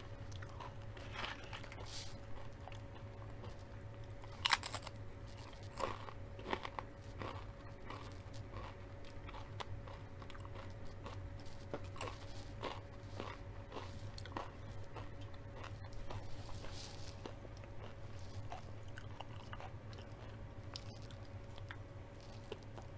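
Close-up mouth sounds of a person eating: chewing with scattered crisp crunches and bites, the loudest about four and a half seconds in.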